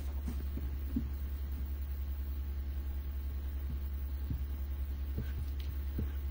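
A low, steady hum that throbs in an even pulse, with a few faint soft ticks over it.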